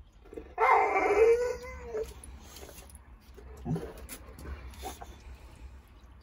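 Brindle boxer dog giving a drawn-out, wavering howl-like call lasting about a second and a half, then a short lower call near four seconds in. It is his attention-seeking 'talking', demanding a share of tea.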